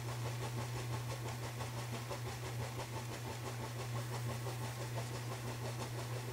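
Steady low hum with a faint hiss underneath, unchanging throughout: room tone picked up by the microphone.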